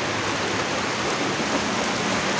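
Steady rain falling, an even, unbroken hiss.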